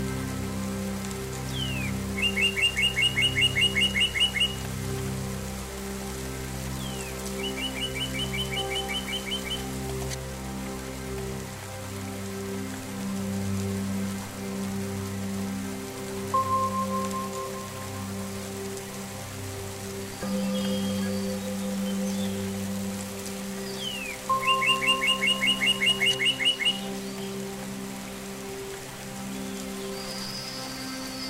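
Slow ambient meditation music of sustained, slowly shifting low tones over steady rain. A songbird sings the same phrase three times, each a falling note followed by a rapid trill of chirps, and two short whistled notes sound in between.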